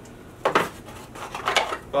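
A small cardboard charger box being opened and handled: a few short knocks and clatters of cardboard and the charger inside, starting about half a second in.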